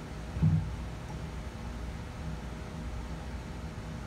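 Steady low background hum with one dull thump about half a second in, as a microphone stand is handled while the sound is being set.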